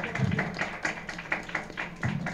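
A small group clapping by hand, with sharp separate claps at about four a second rather than the roar of a large crowd.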